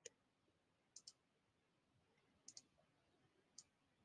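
Near silence broken by a few faint computer mouse clicks: a single click, then two quick double clicks, then one more near the end.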